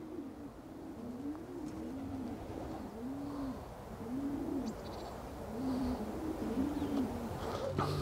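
Racing pigeon cooing: a series of low, rounded coos, each rising and falling, about one a second.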